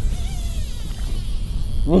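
Fly reel's drag buzzing as a hooked fish pulls line off the spool.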